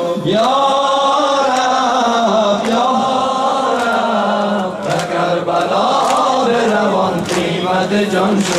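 A man chanting a noha, a Shia mourning lament in Persian, in long drawn-out sung phrases, with sharp slaps about once a second that keep the beat, typical of sinezani chest-beating.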